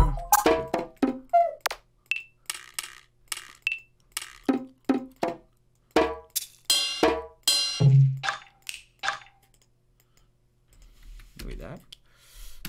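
Percussion one-shot samples auditioned one after another from a drum kit, each a short, different hit (clicks, knocks and small pitched tones), about two to three a second. They stop about nine seconds in, and a faint sound follows near the end.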